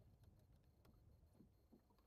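Near silence, with a faint low rumble and a few soft clicks.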